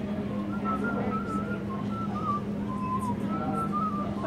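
A man whistling a melody, a run of short wavering notes, over a steady low hum.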